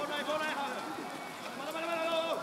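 Several men shouting and calling during a rugby scrum, their voices overlapping, with one long drawn-out call near the end.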